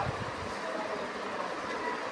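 Steady background noise with a faint, even hum.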